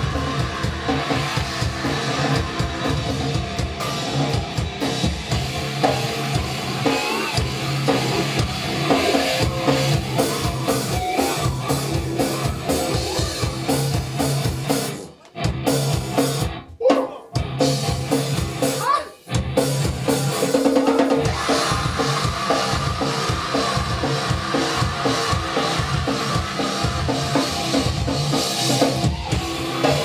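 A live grindcore band plays loud and fast, with a drum kit and distorted guitar. The music is broken by a few short, abrupt stops about halfway through.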